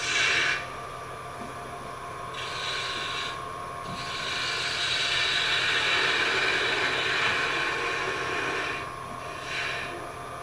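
A turning tool cutting spinning wood on a lathe, a rasping hiss in several passes: a short cut at the start, another about two and a half seconds in, a long cut from about the middle until nearly the end, and a brief one at the end.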